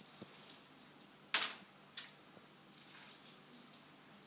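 Half a lemon squeezed by hand over a food processor bowl: a few soft squelches and juice drips, the loudest a short wet squelch about a second and a half in.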